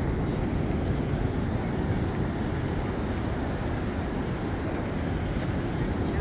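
A steady, even rushing noise with no distinct events: beach ambience of ocean surf breaking off the shore.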